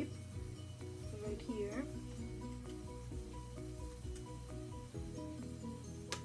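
Background music: short repeated notes over a steady low bass.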